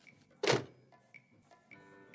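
A single short thunk about half a second in, over quiet film score whose held notes fill out near the end.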